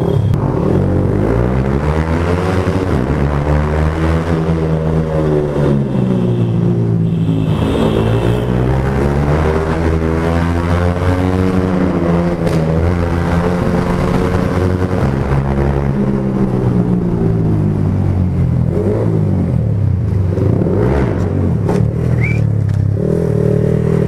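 Yamaha R15's 155 cc single-cylinder motorcycle engine revving hard, its pitch climbing and dropping several times as the rider accelerates and shifts. Part of this is inside a long covered tunnel, where the exhaust sound is different.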